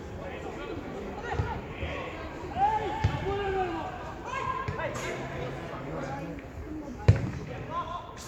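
Football being kicked on a grass pitch: several dull thuds of foot on ball, the sharpest about seven seconds in, among the shouted calls of players.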